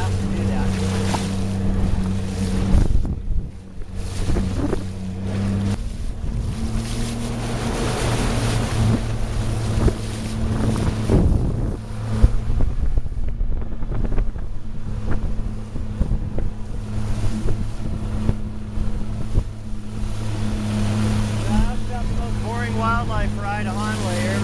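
A small motorboat's engine running steadily at cruising speed, its pitch stepping up slightly about six seconds in, under the wash of water and wind.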